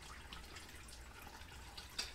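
Quiet room tone with a faint low hum and scattered small ticks, then one short sharp click near the end from a glass liquor bottle being handled.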